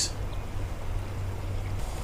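Low, gusting rumble of wind buffeting the microphone outdoors, under faint background noise.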